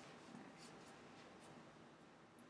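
Near silence: room tone with a few faint, brief rustles.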